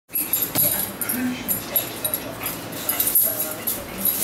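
A dog playing with a toy on carpet, its collar jingling again and again as it moves, with a few light knocks.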